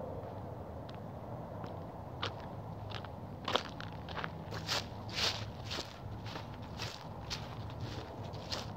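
Footsteps of a person walking outdoors, about two steps a second with a crisp scuffing edge, starting about two seconds in, over a steady low background rumble.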